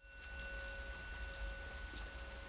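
Insects buzzing in a steady, high continuous chorus, with a faint ringing tone held underneath that begins to fade near the end.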